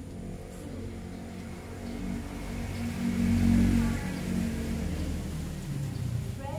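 A motor vehicle passing by, its engine sound building up, loudest a little past the middle, then fading away.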